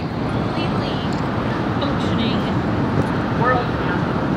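Steady city-street and construction-site background noise, mostly traffic, with a brief distant voice about three and a half seconds in.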